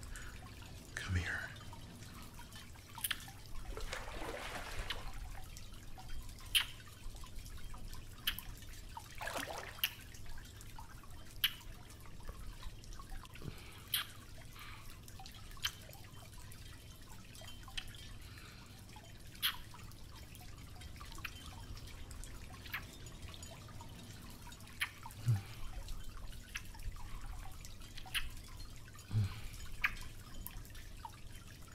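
Close-miked wet kissing smacks, scattered irregularly through the stretch, mixed with water dripping.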